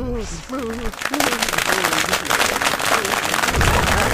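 A man laughing briefly, then from about a second in a dense, steady crackling noise made of many tiny clicks.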